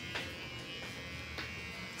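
Electric hair clipper buzzing steadily as it cuts through hair on a man's head.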